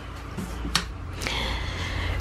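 A single sharp click about three-quarters of a second in, followed by a steady hiss over a low rumble.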